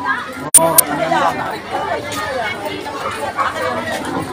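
A crowd of people talking and calling out over one another in an excited babble of voices, with a sharp loud click about half a second in.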